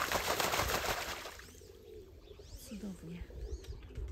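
Muscovy drake bathing, beating the water with its wings and body in a burst of splashing that fills the first second and a half. After it, a few high bird chirps and some low cooing calls are heard.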